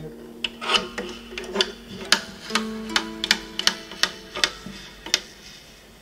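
Sharping levers on a wooden Celtic lever harp being flipped one after another: about a dozen sharp clicks over five seconds, some leaving strings faintly ringing. This is the harp being re-set for the key of the next piece.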